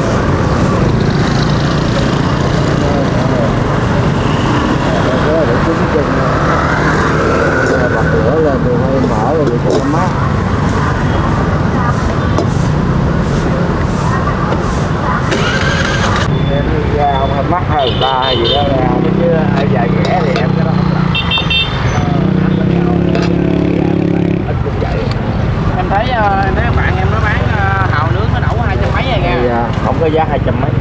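Street traffic with motorbikes passing close by and people talking over it. About two-thirds of the way through, two steady droning tones sound, each lasting a second or two.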